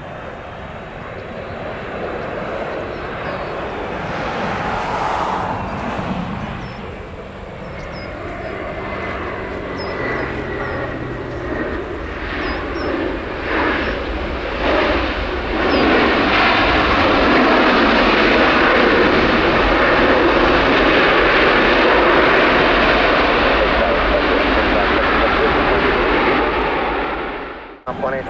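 Airbus A330 twin-jet landing: engine noise on short final building through touchdown, with a thin high whine. From a little past halfway it becomes a louder, steady rush on the runway rollout, typical of reverse thrust, and it cuts off sharply near the end.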